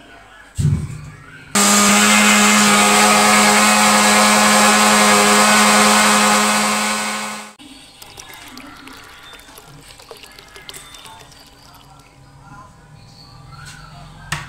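Electric countertop blender motor running at full speed for about six seconds, blending mango, sugar and milk into a shake, with a steady hum; it starts after a short knock and stops abruptly. Afterwards, quieter sounds of the shake being poured from the jug into a glass.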